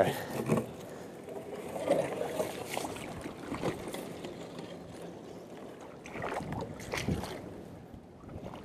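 A small jon boat being pushed off a muddy bank with a tree branch: faint water sloshing with scattered knocks and scrapes, a few stronger ones near the end.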